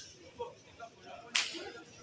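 Cotton karate gi cracking with sharp kata techniques: a small snap at the start, then one loud, sharp crack a little past halfway.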